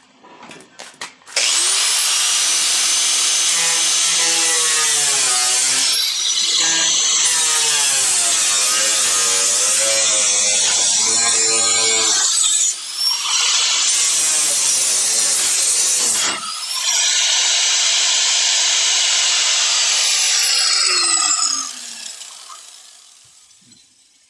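A power grinder working the steel of a newly fitted quarter panel, spinning up about a second in, its pitch sagging and wavering as it bears on the metal. It drops off briefly twice and spins back up, then winds down with a falling whine near the end.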